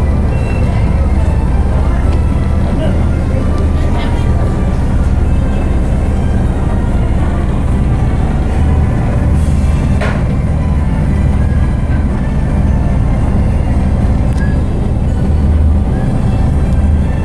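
River tour boat's engine running steadily, a constant low hum heard from inside the glazed passenger cabin.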